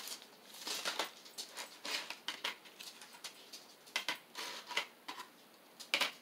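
Small glass beads and stones clicking lightly and irregularly as they are picked over on a paper plate and set down on a CD.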